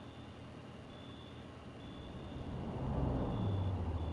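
A motor vehicle passing by: a low engine rumble that builds about two seconds in, is loudest near three seconds and begins to fade by the end, over a steady hiss of rain.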